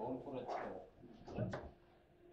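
Foosball table in play: the ball and the rods' figures knock and rattle in a few short bursts.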